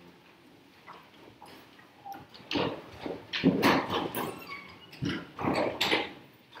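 Irregular rustling and knocking from people moving about, faint at first and louder from about two and a half seconds in.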